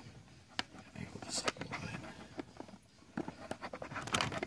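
Faint handling noise of a shotgun receiver and small parts on a workbench: scattered light clicks and knocks with some rustling.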